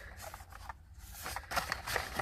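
Paperboard sampler box being handled in the hands: a scatter of light clicks, taps and rustles as it is turned over.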